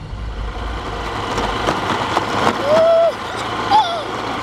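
Motorcycle engine running as the bike rides along, a low steady rumble that fades after the first second or so. A voice calls out loudly about two and a half seconds in and again briefly near the end.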